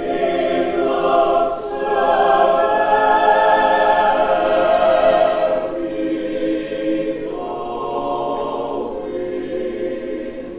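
Mixed choir of men's and women's voices singing sustained chords, swelling louder in the middle and softening from about six seconds in.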